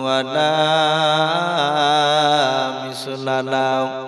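A man's voice chanting Arabic through a microphone in one long, drawn-out melodic phrase, the pitch wavering up and down. This is the sung Arabic opening of a waz sermon. Near the end the voice breaks off and trails into echo.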